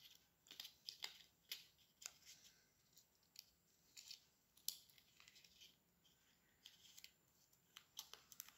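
Faint, scattered crinkles and crackles of a paper cupcake liner being handled and pressed around a cookie by hand.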